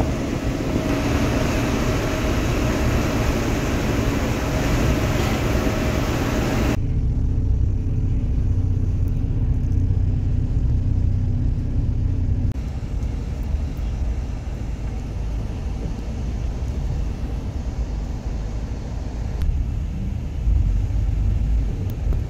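Steady low rumble of a moving bus's engine and tyres heard from inside the cabin. Loud hiss and wind noise in the first several seconds drops away abruptly about a third of the way in, leaving mostly the low rumble.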